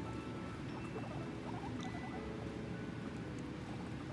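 Guinea pigs heard faintly: a few short, high squeaks about a second and a half in, over quiet light movement, with soft background music underneath.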